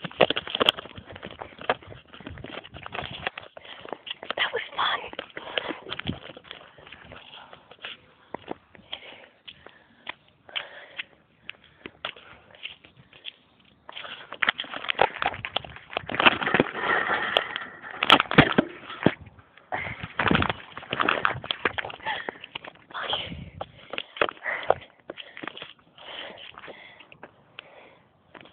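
Indistinct voices mixed with many short knocks and rustles, louder and busier from about halfway through.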